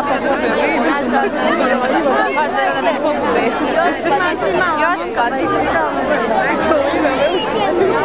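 Crowd of people chattering, many voices talking over one another at a steady level.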